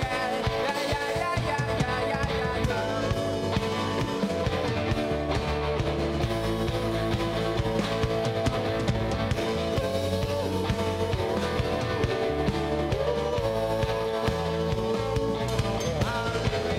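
Live rock band playing, with electric guitar and drums and a sung vocal line over steady bass.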